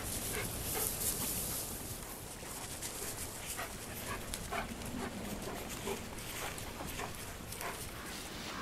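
Gray wolf making short, irregular calls, one after another, over a steady background hiss.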